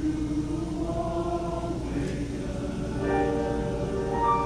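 Men's choir singing held chords a cappella, with a fuller, louder chord coming in about three seconds in.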